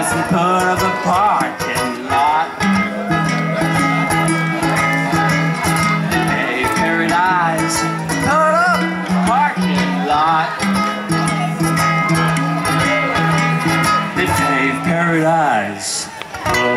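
Two ukuleles playing live: an instrumental passage with a wavering, bending lead melody over steady low notes.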